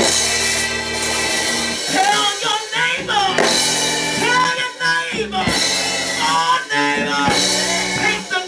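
A voice singing into a microphone over the PA in long, wavering held notes, with live instrumental accompaniment and drums underneath.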